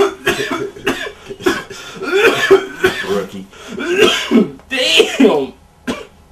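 A man's coughing fit: repeated harsh, voiced coughs from drawing in smoke from a cigar laced with weed.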